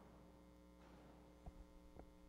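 Near silence: a steady electrical mains hum, with two faint low bumps in the second half.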